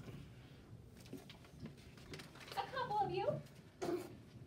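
Low room noise with scattered small clicks, and a short stretch of speech about two and a half seconds in. A sharp click comes near the end.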